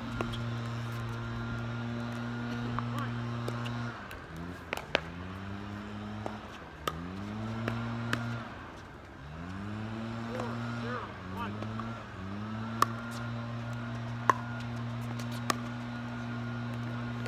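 An engine running steadily, its pitch dropping and climbing back up several times in the middle as it is throttled down and up again. Over it come sharp pops of pickleball paddles striking the ball, the loudest sounds, a few of them through the rally.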